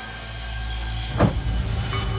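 A car's trunk lid is slammed shut with one loud thump about a second in, with a shorter knock just before the end, over a low steady rumble.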